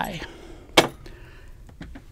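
A single sharp click about a second in, a small hard object knocking against a hard surface, otherwise quiet room tone.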